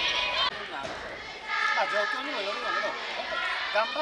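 Voices in a sports hall: girls shouting and calling, with held high-pitched calls from about a second and a half in, over a lower man's voice.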